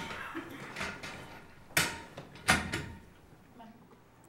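Two sharp knocks a little under a second apart, amid low murmuring voices and small bumps of people moving about a room.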